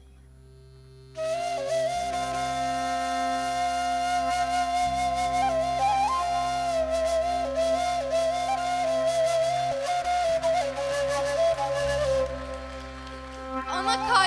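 Kaval, a long end-blown wooden flute, plays a slow, ornamented solo melody over a steady low drone, entering about a second in. It grows softer near the end.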